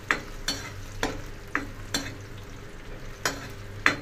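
A metal spoon scraping and knocking against a black frying pan in irregular strokes, about two a second, over the steady sizzle of onions and garlic frying in hot oil for a tadka (spiced tempering).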